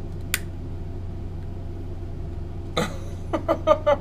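A steady low hum, with a sharp plastic click about a third of a second in as the drone's remote controller is handled. Near the end, a person laughs in short bursts.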